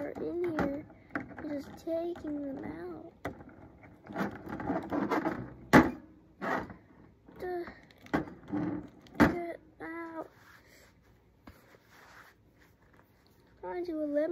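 A child's voice making wordless sounds in short bursts, mixed with sharp knocks and clicks of plastic action figures against a toy wrestling ring. The loudest knock comes about six seconds in.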